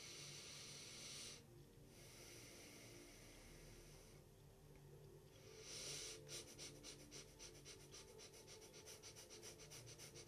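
A man's faint breathing for a pranayama: one long, slow breath in and then out, followed from about six seconds in by rapid breath-of-fire breathing, short forceful pumps at about three a second.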